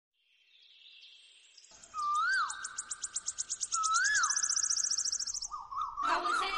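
Birdsong: two clear whistled notes, each rising then dropping, about two seconds apart, over a fast high-pitched trill that stops shortly before the end.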